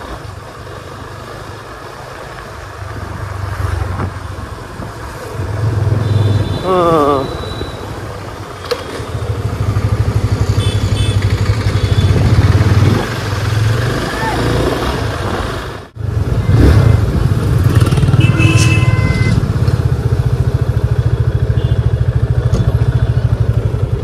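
Motorcycle engine running while being ridden through traffic, its pitch and level rising and easing with the throttle, with road and wind noise. The sound cuts out abruptly for an instant about two-thirds of the way in, then the steady riding sound resumes.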